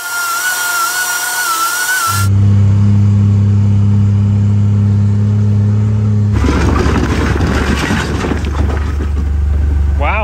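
A power tool cutting metal for about two seconds, a loud hiss with a wavering high whine. It then gives way to the engine of a John Deere Gator utility vehicle running steadily while driving, which turns rougher and noisier about six seconds in.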